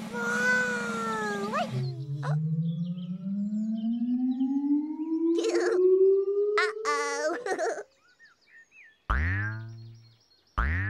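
Cartoon sound effects for a big bouncing ball: a long whistle-like tone rising slowly in pitch over about six seconds as the ball flies, then, after a short hush, a springy "boing" near the end as it lands and bounces.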